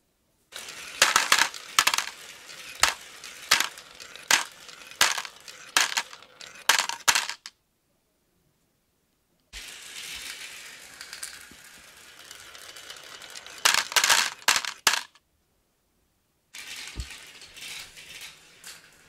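Glass marbles rolling down a wooden and plastic marble run, a steady rolling rattle with sharp clicks about once a second as they cross joints and curves. The sound cuts off dead twice and starts again.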